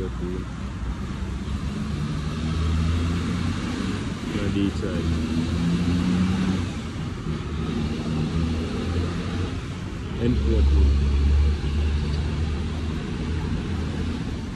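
Road traffic: car and truck engines running as vehicles pass, with a low engine sound that grows louder about ten seconds in.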